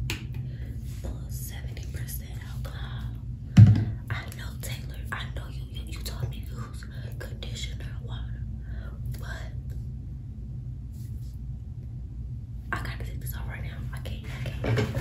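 A woman whispering, with a pause of a couple of seconds near the end. About three and a half seconds in there is a single loud thump, over a steady low hum.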